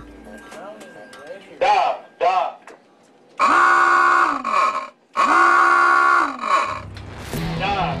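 Two long, loud blasts of a submarine's alarm klaxon, each about a second and a half, coming a moment after a short two-syllable spoken call.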